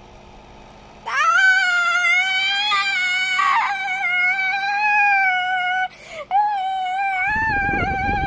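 A child's voice holding a long, high-pitched wavering note, like a drawn-out squeal. It starts about a second in, breaks briefly about six seconds in, and picks up again.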